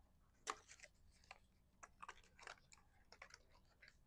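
Faint, scattered rustles and small clicks of cardstock pieces being handled and slid together, the sharpest tick about half a second in.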